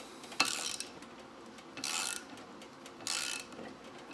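Ratchet wrench turning a nut welded onto a broken exhaust bolt in an aluminum LS cylinder head, backing the bolt out. The ratchet sounds in three short bursts.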